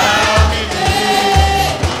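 Live samba from a band on a PA: several voices sing together over a deep bass-drum beat, one heavy stroke about once a second with lighter strokes between.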